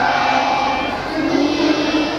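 A group of young children singing together in unison, holding long notes; the tune drops to a lower held note about a second in.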